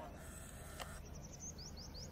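A bird chirping a quick run of short rising notes through the second half, over a faint, steady low drone from distant twin WDM-3D Alco diesel locomotives approaching. A single sharp click about a second in.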